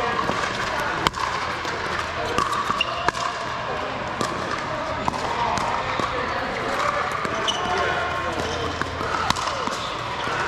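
Pickleball paddles striking a hard plastic ball in a rally: sharp, irregular pops, the loudest about a second in and near the end, over steady background chatter.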